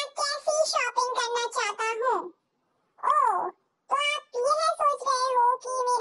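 A high-pitched, child-like dubbed voice speaking in quick phrases, pausing briefly twice.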